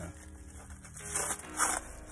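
Clear plastic wrapping crinkling as a wrapped shofar is handled, with two louder rustles in the second half.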